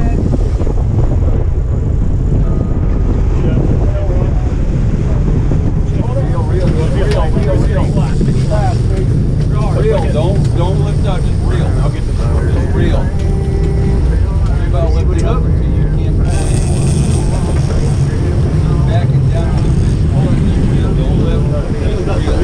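Boat under way at sea: a steady low rumble of engine and water, with wind buffeting the microphone. Voices call out indistinctly over it from about a quarter of the way in.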